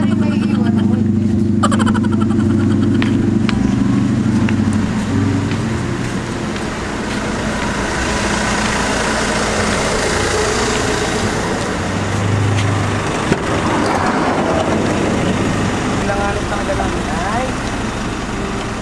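A vehicle engine idling: a steady low hum for the first few seconds, giving way to a broader, noisier rush from about six seconds in.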